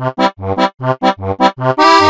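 Software accordion patch played from a MIDI keyboard: short detached notes about four a second, a low bass note on every other stroke alternating with chords, ending on a longer held chord near the end.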